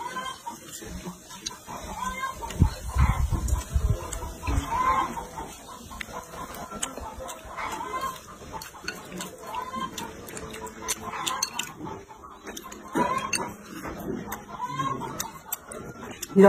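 Chicken clucking: short rising-and-falling calls repeating every second or two. A brief low rumble comes a few seconds in.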